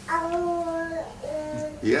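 A high-pitched voice holding two steady, sung-like notes, the first long and the second shorter and slightly lower.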